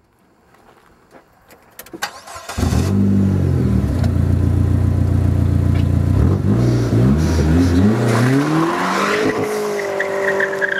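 Dodge SRT-4's turbocharged four-cylinder engine starting abruptly about two and a half seconds in after a few light clicks, then running steadily. It revs hard as the car launches, its pitch rising in several climbing sweeps, with a hiss of tire squeal from the spinning rear tires near the end.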